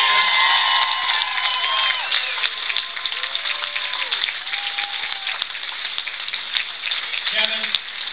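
Audience applauding and cheering, with held shouts and whoops over dense clapping in the first two seconds; the clapping thins out toward the end.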